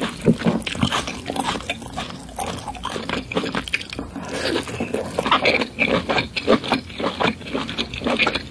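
Close-miked chewing of lobster meat: a steady run of irregular, messy mouth smacks and quick clicks.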